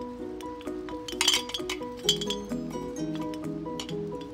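Hanging Christmas ornaments clinking together for about half a second as a hand moves them, about a second in, over steady background music with a plucked-string melody.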